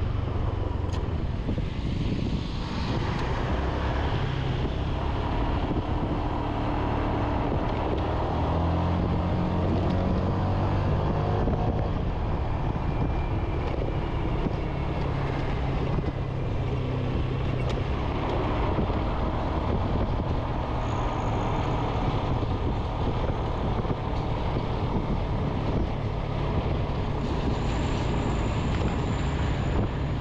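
Motorbike riding along: its engine runs steadily under a constant rush of wind and road noise, and the engine note rises for several seconds about a third of the way in.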